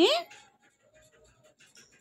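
Faint scratching and clicking of small plastic toy-glass pieces handled by a child, the stem being pushed back into the cup after it came apart. A woman's short questioning "hai?" rises in pitch at the very start.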